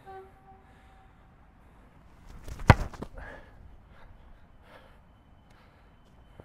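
A rugby ball place-kicked off an RBVortex low-cut kicking tee: a single loud, sharp thud of the boot striking the ball about two and a half seconds in.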